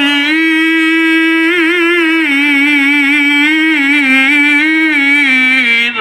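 A male qari's voice amplified through a microphone, holding one long melodic note of Qur'anic recitation (tilawah) with wavering ornaments. The note steps lower in pitch twice and breaks off just before the end.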